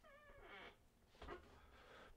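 Near silence: room tone, with a faint, brief wavering pitched sound in the first half-second.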